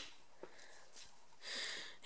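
Quiet handling of a small brushless RC motor in the hands: a soft click about half a second in and a brief soft hiss near the end, otherwise faint room tone.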